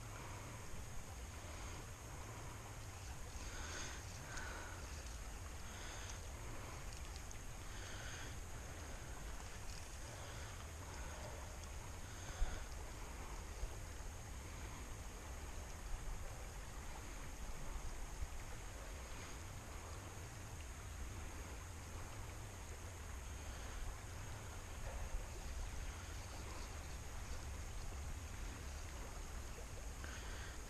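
Creek water flowing steadily under a low outdoor rumble, with a single short knock about twelve seconds in.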